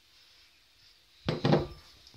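A ceramic bowl set down on a wooden tabletop: a short knocking clatter of a few quick strokes over about half a second, a little over a second in.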